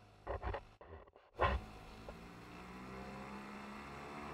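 Small outboard motor on a dinghy running under way, its revs and pitch rising slowly as it accelerates. There are a few short thumps in the first second and a louder burst about a second and a half in.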